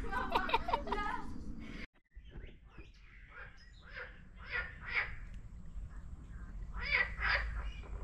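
Short, repeated bird calls, loudest about four to five seconds in and again about seven seconds in, over a steady low rumble, with a brief dropout near two seconds.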